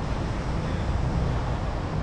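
Steady low rumbling outdoor noise, mostly wind buffeting the microphone, with a faint hum like distant traffic underneath.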